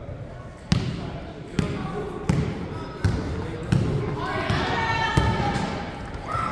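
A basketball being dribbled on a hardwood gym floor: about six sharp bounces, spaced a little under a second apart. Voices rise in the background near the end.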